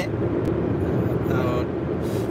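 Steady road and engine noise heard inside the cabin of a moving minivan, an even low rumble that does not change.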